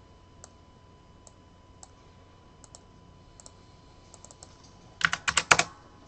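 Computer keyboard being typed on: scattered faint keystrokes, then a quick burst of louder keystrokes near the end.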